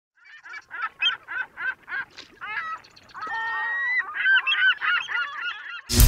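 Geese honking: a quick run of short honks, about four a second, then longer and overlapping honks from several birds.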